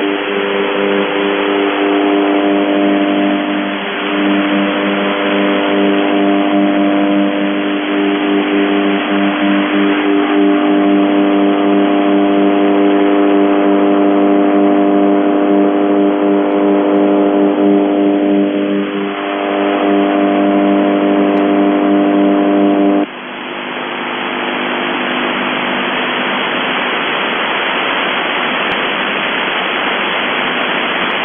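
UVB-76 'The Buzzer' shortwave station on 4625 kHz heard through a shortwave receiver: a steady, low buzz over static hiss. It drops sharply in level about 23 seconds in, leaving a fainter buzz under the hiss.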